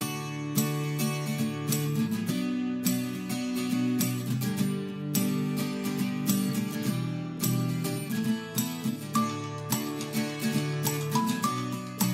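Background music: a strummed acoustic guitar track with a steady rhythm.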